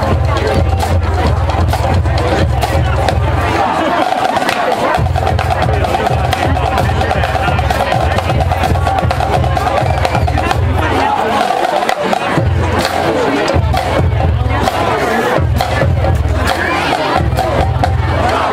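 Marching band music led by its drumline, with tenor drums, bass drums and crash cymbals played in quick, dense rhythms.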